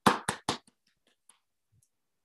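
Hand claps of a brief welcoming applause: about four sharp claps in quick succession in the first half second, then a few faint ones trailing off.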